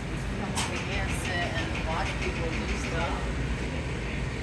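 Steady low hum of commercial kitchen ventilation, with faint voices in the background and a couple of light clicks about half a second and a second in.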